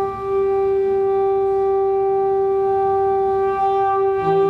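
A conch shell (shankha) blown in one long, steady note, with a brief dip in level near the start.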